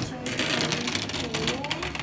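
Several metal marbles rolling down a plastic toy-train track, a dense rattle of small clicks as they run and knock together. Voices murmur behind it.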